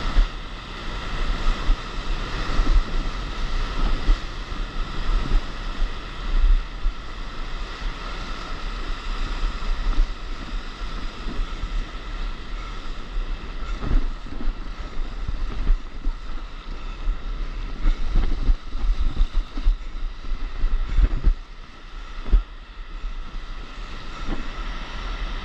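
Wind buffeting the camera's microphone in irregular gusts over the rushing of whitewater around a stand-up paddleboard gliding through broken surf.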